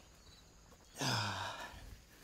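A man's voiced sigh about a second in, falling in pitch and lasting under a second, as he sits down on a grassy slope.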